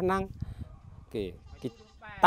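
A man speaking in the Bru-Vân Kiều language, in short phrases with brief pauses between them.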